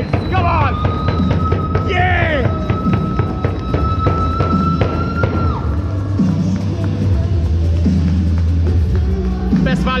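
Ice hockey supporters chanting and shouting to the beat of a fans' drum, with one long steady high note held for about five seconds. In the second half, music with a repeating low beat takes over.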